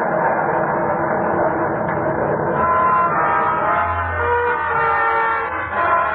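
Radio-drama sound effect of a storm at sea: a steady rushing wind. A plucked string instrument starts playing about halfway through.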